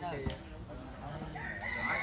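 A rooster crowing, one long held call in the second half, over the voices of players and onlookers. A volleyball is struck with a sharp knock shortly after the start.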